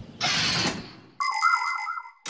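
Cartoon sound effects. A short rushing noise fades away, then, just over a second in, a bright electronic chime with a wavering tune under it rings briefly as the show's hand-sign logo card appears.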